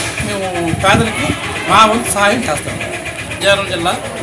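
A man speaking in Telugu over a steady background noise.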